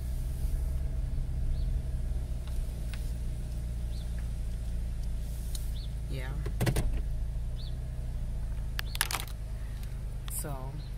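Steady low hum of a car's engine heard from inside the cabin, with a brief falling pitched sound about six and a half seconds in and a sharp click near the end.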